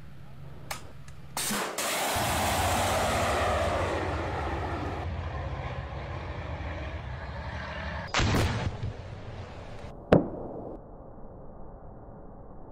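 FGM-148 Javelin anti-tank missile firing: a sharp crack about a second and a half in, then the rush of the rocket motor, fading over a few seconds. Two blasts follow later, about two seconds apart, the second the loudest.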